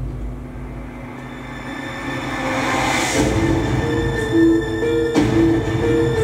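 Film trailer soundtrack music over a low rumble. A swell builds and rises to about three seconds in, then a repeating figure of alternating notes begins and continues.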